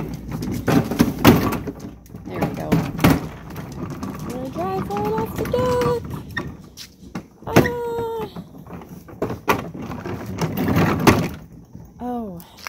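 A plastic Cozy Coupe toy car being rolled and handled, knocking and clattering over a doorway and deck boards in a string of sharp bumps. A few short high-pitched vocal calls come in the middle.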